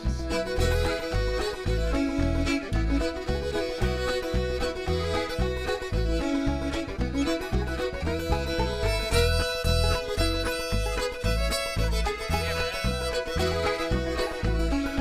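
Old-time string band playing an instrumental break: the fiddle carries the tune over clawhammer banjo and button accordion, with an upright bass plucking a steady beat.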